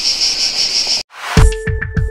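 Crickets chirping in a steady pulsing trill for about the first second, then cut off abruptly. After a brief gap a news-channel intro jingle begins: a swelling rush of noise followed by electronic music with held tones and plucked notes.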